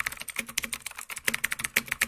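Computer keyboard typing, a rapid, even run of key clicks at about a dozen a second.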